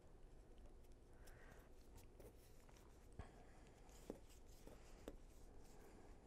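Near silence, with faint rubbing and a few soft clicks of bamboo knitting needles working yarn, the clicks falling in the second half.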